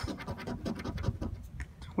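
A coin scraping the coating off a paper scratch-off lottery ticket in quick, repeated short strokes.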